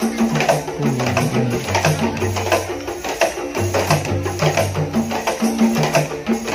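Qasidah rebana ensemble playing an instrumental passage: rebana frame drums struck in a quick, regular pattern over held low bass notes that step between pitches.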